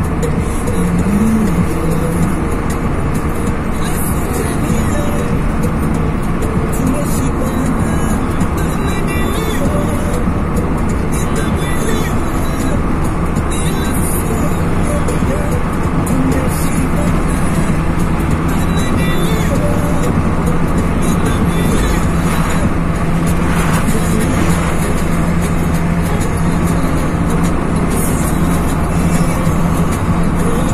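Steady engine and tyre drone inside a moving car's cabin, with music playing over it.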